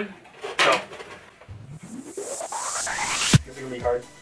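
An electronic riser sound effect: a rising synth sweep with noise building up over about two seconds, cutting off suddenly into a deep bass hit, leading into electronic dance music.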